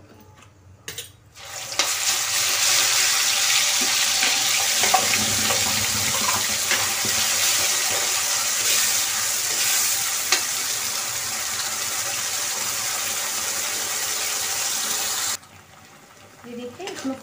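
Wet onion, garlic, green chilli and tomato paste sizzling loudly after going into hot mustard oil in a kadhai, stirred with a steel spoon. The sizzle starts about a second and a half in, holds steady and cuts off abruptly near the end.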